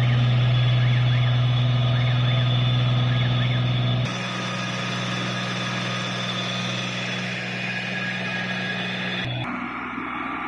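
The engine driving a water tanker's spray pump, running at a steady speed: a low, steady drone with a hiss over it. The sound drops abruptly about four seconds in and shifts again near the end.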